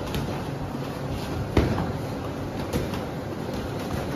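Boxing gloves landing punches in sparring: a few sudden hits, the loudest about a second and a half in, over a steady background rumble.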